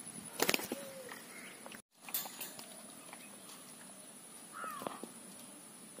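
A few light knocks and rustles in the first couple of seconds, with the sound cutting out for a moment just before two seconds in. A short, falling bird call comes nearly five seconds in, over a faint steady high whine.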